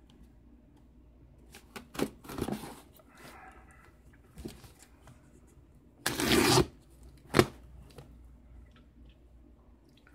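Tape being torn from a cardboard package, with light rustling and clicks and then a loud rip lasting about half a second around six seconds in, followed by a single sharp knock.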